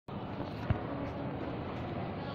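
Steady background noise of a large open public hall, with one short thump less than a second in.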